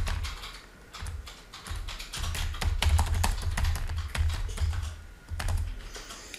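Computer keyboard typing: a run of irregular key clicks as a short line of text is typed, with brief pauses between bursts of keystrokes.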